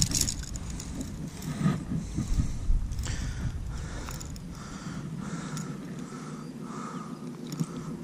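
Rustling and scattered light clicks from handling a just-landed largemouth bass hooked on a metal-bladed buzzbait, over a low rumble that fades about five seconds in.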